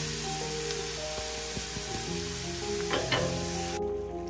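Diced onion and dried herbs sizzling in olive oil in a stainless sauté pan, with background music playing over it. The sizzle cuts off suddenly near the end.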